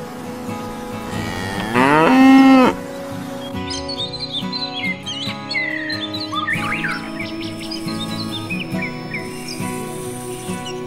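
A cow moos once, a single call about a second long starting about two seconds in, over soft background music. From about three and a half seconds, birds chirp.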